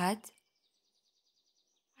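A woman's voice finishing a spoken phrase, then faint, rapid high-pitched chirping for about a second before the sound falls nearly silent.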